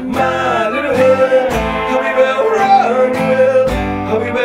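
Live acoustic band music: strummed acoustic guitar with bass notes and singing voices, including a long held note through the middle.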